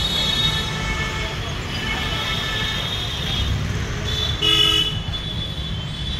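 Busy street traffic noise with a vehicle horn honking once, briefly, about four and a half seconds in, the loudest sound.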